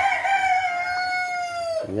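A rooster crowing: one long drawn-out note that sinks slightly in pitch and breaks off shortly before the end.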